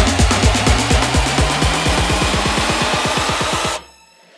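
Electro house build-up: a rapid, evenly repeating drum roll over a bass tone that rises steadily in pitch, cutting off abruptly to near silence just before the end.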